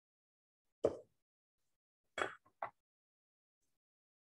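Three brief knocks and clinks of a metal canning funnel and glass mason jar being handled while vegetables are packed into the jar: one about a second in, then two close together just after two seconds.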